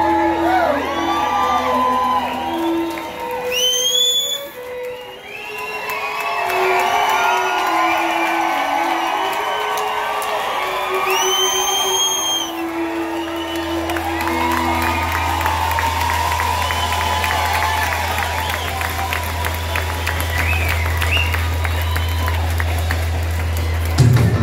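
A live country band with a fiddle playing under a crowd that is cheering and whooping, with two loud rising whistles from the audience, about four and eleven seconds in. A low bass drone holds under most of it.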